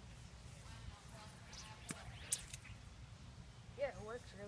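Faint outdoor background: a steady low rumble of wind on the microphone, with a few faint high chirps in the middle and a short voice just before the end.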